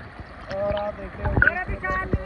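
People's voices talking, starting about half a second in; the words are not clear.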